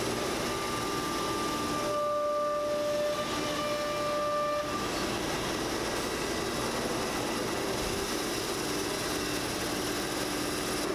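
CNC router and its vacuum hold-down pumps running with a steady machine noise. For a few seconds near the start a steady high whine sounds over it, joined by a lower tone about a second later, both stopping together about five seconds in.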